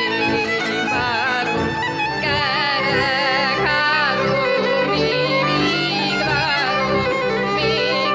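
Hungarian folk music played live: a fiddle with a woman singing, over sustained low notes.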